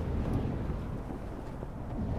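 Animated sound effect of rushing wind, a low, even rush of air that slowly fades.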